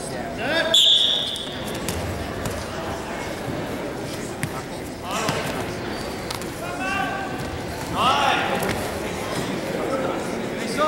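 Several people shouting at a wrestling match in a gym, the loudest calls about half a second, five and eight seconds in, with scattered thuds in between.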